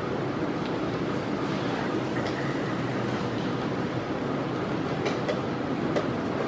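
Steady low background rumble of a busy playing hall, with a few faint sharp clicks of wooden chess pieces being set down and the clock being pressed.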